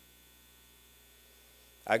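Near silence with a faint, steady electrical mains hum, until a man's voice resumes right at the end.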